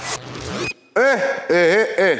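The end of a TV show's musical logo sting with a whoosh, which cuts off about two-thirds of a second in. After a brief gap, a man's loud voice comes in about a second in, its pitch swooping up and down with no clear words.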